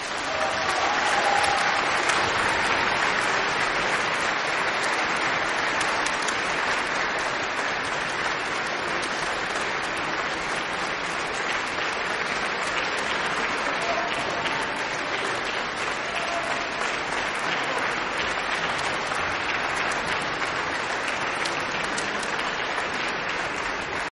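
Concert audience applauding, swelling over the first second or two just after the orchestra's last chord dies away, then holding steady.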